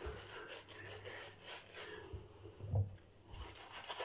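Boar-bristle shaving brush scrubbing lather on a face, faint quick rubbing strokes as a shaving-stick lather is worked up. One short low sound about three-quarters of the way through.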